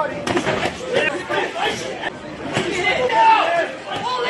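Overlapping voices of spectators calling and chattering around a boxing ring during an amateur bout, with a few short knocks near the start.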